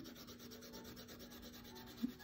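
Faint rubbing of a coloured pencil shading across paper.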